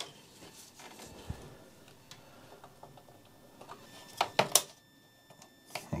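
Power-supply cables being handled inside a PC case and a connector pushed into the motherboard: faint rustling with a few sharp plastic clicks and knocks, the loudest around four and a half seconds in.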